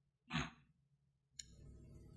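A single short breath, a quick sigh-like exhale or intake, picked up close on a microphone, about a third of a second in; otherwise near silence with faint room noise.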